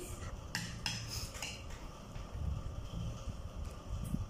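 Plastic spoon and fork clicking and scraping against plastic bowls, with several short clicks in the first second and a half and duller knocks after.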